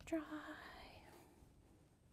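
A woman's voice ending a word with a breathy, whispery trail that fades out about a second in, then faint room tone.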